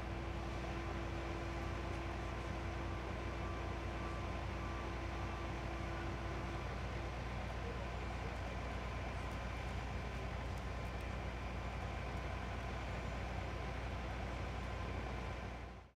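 Steady city street ambience with a low hum of vehicle engines running. A faint steady tone drops out a little under halfway, and the whole sound fades out at the very end.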